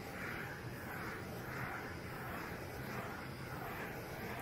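Handheld butane torch burning with a steady hiss that swells and fades a little as it is passed over a freshly poured resin flood coat, heating the surface to bring up and pop the air bubbles.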